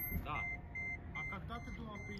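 A vehicle's electronic warning beep: a short, high, steady tone repeating a little over twice a second, over a low rumble.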